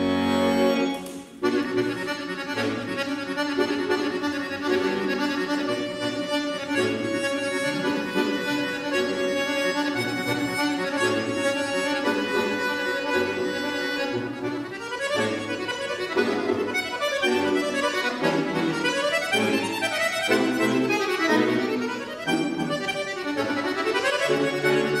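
Bayan (Russian chromatic button accordion) played solo. A held chord breaks off about a second in and the playing goes on with a melody over held bass notes, then turns to separated, rhythmic chords in the second half.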